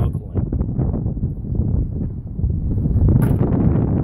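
Diesel truck engine running with a rough, irregular pulsing that is not normal for a diesel: it sounds like it is struggling. Wind buffets the microphone over it.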